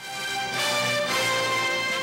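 News programme theme music: a loud, full-band ident sting that starts abruptly right at the outset.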